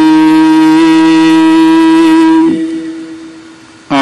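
Gurbani kirtan holding one long, steady note between sung lines. The note breaks off about two and a half seconds in and fades away, and singing comes back in right at the end.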